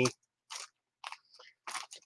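Several short, faint crackles and rustles of items being handled by hand.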